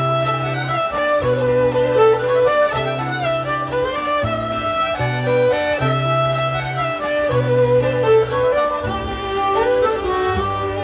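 Live folk band playing an instrumental passage, a fiddle carrying the melody over held bass notes that change about once a second.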